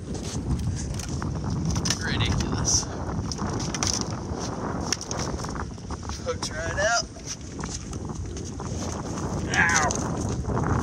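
Wind buffeting the microphone on an open boat, a steady low rumble, with two short wavering voice sounds about six to seven seconds in and near the end.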